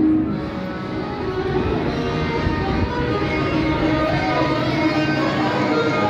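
Live street music with string instruments, played by street musicians to a gathered crowd; it grows a little louder after the first second or so.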